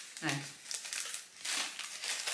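Packaging crinkling and rustling in irregular bursts as it is handled and unwrapped, with a short spoken word near the start.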